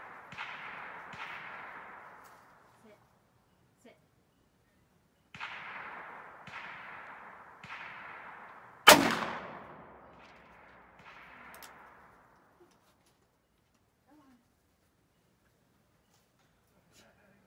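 A single loud shot from a .44 Magnum revolver about nine seconds in, ringing and echoing as it dies away. Around it come several fainter gunshots in quick strings of two or three, each trailing off over about a second.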